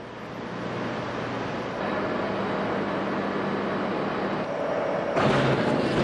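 Steady industrial machinery noise from an offshore platform crane hoisting cargo containers: a low mechanical hum under a broad rushing noise, growing louder about five seconds in.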